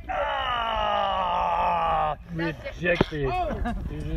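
A person's long, drawn-out vocal cry, held for about two seconds and slowly falling in pitch. Then excited voices, and a single sharp clack about three seconds in, typical of a hard plastic croquet ball being struck.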